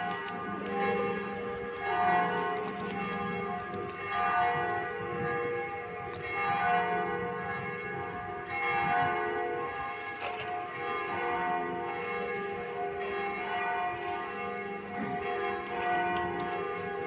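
Church bells ringing: several bells sounding together, their tones overlapping and hanging, with new strikes coming about every two seconds.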